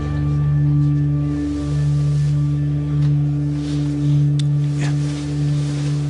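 Dramatic background music: a low synthesiser drone of a few held notes that swell and ease slowly, with no melody or beat.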